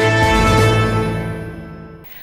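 Television news opening theme music ending on a held chord that fades away over the second half.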